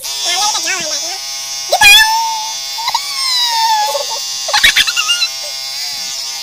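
Electric beard trimmer buzzing steadily as it cuts through a beard, raised in pitch because the audio is sped up. High-pitched, sped-up voices break in over it several times.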